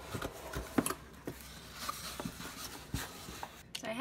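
Cardboard mailer box being opened by hand, with the rustle of its crinkle-cut paper shred filler and a few sharp clicks and knocks from the box, the loudest about a second in and again near the end.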